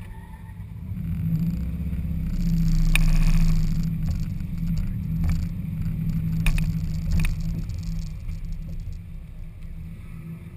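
Subaru WRX STI's turbocharged 2.5-litre flat-four engine running at low speed as the car creeps forward. It swells in loudness about three seconds in, then settles back. A few sharp ticks fall in the middle.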